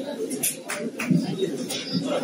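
Indistinct low voices in a small room, with a few short clicks.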